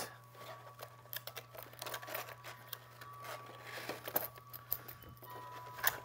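Faint handling sounds: scattered light clicks and rustling as a wine opener kit's cloth bag, paper instructions and plastic case are moved about on a wooden table.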